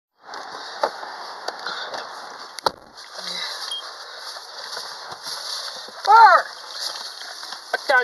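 Rustling and handling noise from a hand-held phone, over a steady hiss, with a few sharp clicks in the first three seconds. A short voiced sound, rising then falling in pitch, comes about six seconds in.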